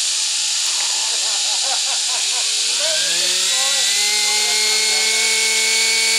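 Nitro RC helicopter's glow engine running with a steady high hiss. About two seconds in, a rising whine comes in as the rotor head spools up, then settles into a steady pitch about a second later.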